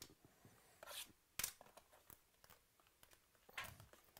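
Faint crackling and tearing of plastic shrink wrap on a trading-card box being opened by hand, a few sharp crackles about a second in, a moment later and again near the end, with small ticks between.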